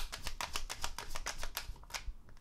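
Tarot deck being shuffled in the hands, the cards clacking in a quick run of about seven or eight snaps a second that stops just before the end.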